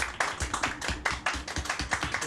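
A small group of people clapping, the claps irregular and quick.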